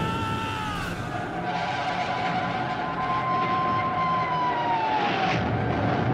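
A wartime sound-effects bed: a steady low rumble under long held tones, one of which slides down in pitch about five seconds in.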